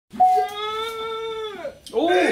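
A man's long, drawn-out excited shout, held on one pitch for about a second and then dropping away, with a second shout starting right at the end.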